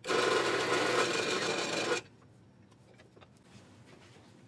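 Drill press running with a Forstner bit boring into a wood blank: a steady motor tone under a rasping cutting noise, lasting about two seconds before it stops suddenly.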